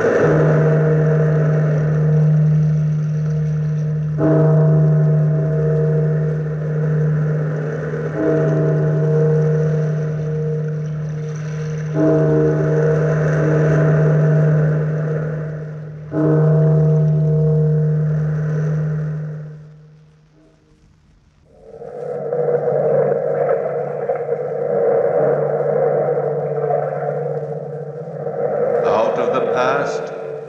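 A large bell tolling, struck five times about four seconds apart, each stroke ringing on with a deep hum that fades after the last. After a short drop in level about two-thirds through, a different steady sustained sound takes over.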